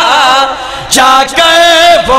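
A man's voice chanting devotional verse in a drawn-out, melodic style. A phrase trails off about half a second in, and after a short break a new phrase starts with a long held note about a second in.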